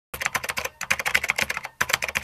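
Typing sound effect: a rapid run of keystroke clicks with a brief break near the end, set to on-screen text being typed out.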